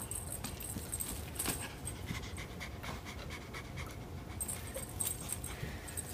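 A domestic cat panting.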